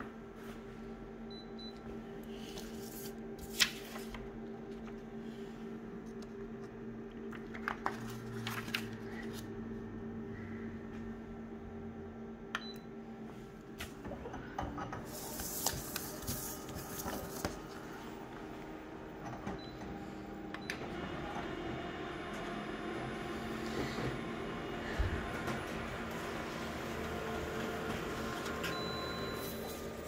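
Large office photocopier running with a steady hum, broken by a few sharp clicks. About halfway a sheet of paper rustles on the scanner glass. Over the last ten seconds the machine's running grows louder and fuller as it scans and prints the copy.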